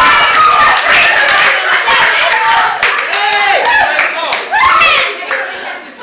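A group of women clapping, with excited raised voices over the claps. The clapping and voices die down near the end.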